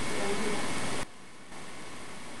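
Loud recorder hiss from a boosted playback, with a faint, whispery voice-like sound in it, presented as an EVP voice saying "I'm here". The hiss cuts off suddenly about a second in, and a lower steady hiss takes over.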